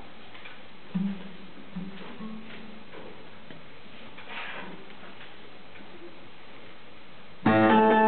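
A mostly quiet stretch with a few soft, low plucked cello notes, the first and clearest about a second in. Near the end cello and piano start playing together, loudly.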